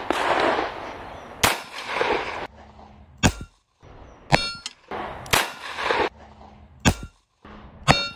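Taurus Tracker .357 Magnum revolver firing .38 Special rounds: a series of sharp reports about a second or two apart, two of them with a ringing metallic clang.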